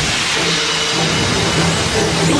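Animated fight sound effect: a loud, continuous crackling hiss of sparks as an alchemically hardened arm breaks apart, over background music with a pulsing low note.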